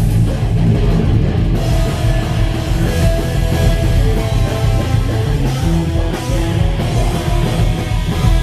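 A live heavy metal band playing loud: distorted electric guitars over bass and a drum kit, running on without a break.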